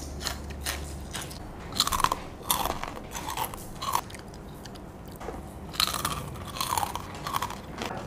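Close-up chewing and crunching of crispy salted egg peyek crackers, with irregular sharp crunches spread across the whole stretch.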